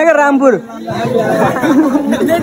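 Speech: young men talking and chattering close to the microphone.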